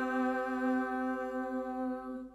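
Unaccompanied singing of a Georgian Christmas chant: a single note held steady without a change of pitch.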